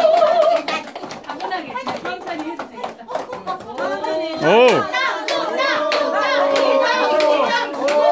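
Disposable cups clacking against each other and the tabletop as they are quickly stacked, a string of sharp little clicks. Several people call out and cheer over it, with a loud shout about four and a half seconds in and drawn-out cheering after it.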